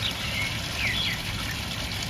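Water splashing steadily from a tiered barrel fountain, with a few short high chirps near the start and about a second in.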